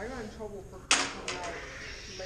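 Combat lightsaber blades striking each other: one sharp crack about a second in, followed by two lighter taps.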